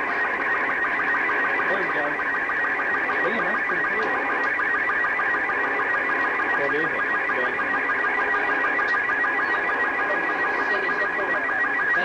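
Slow-scan television (SSTV) signal from the Space Shuttle Challenger coming through a ham radio receiver's speaker: a steady, rapidly repeating warble of tones as a picture is received line by line.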